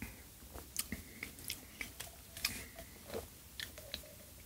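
Two people drinking from bottles: quiet swallowing, lip and mouth noises, heard as a string of short, irregular clicks.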